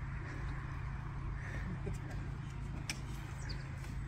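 Quiet outdoor background: a low steady rumble with faint distant voices, and a single light click about three seconds in.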